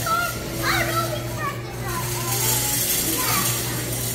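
Young children's voices chattering and calling out, one rising high call about a second in, over a steady low hum.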